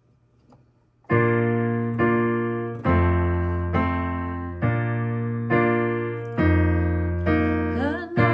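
Piano starting about a second in with slow, held chords, a new chord struck roughly every second, each ringing and fading until the next.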